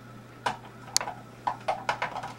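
Light plastic clicks and knocks from a plastic bucket balance scale as one bucket is loaded and its side of the beam tips down: about five separate knocks, the sharpest about a second in.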